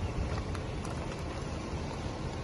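Outdoor background noise: a fluctuating low rumble with a few faint clicks.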